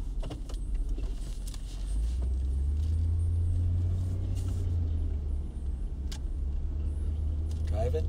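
Car driving, heard from inside the cabin: a steady low road-and-engine rumble that grows louder about two seconds in, with scattered light clicks.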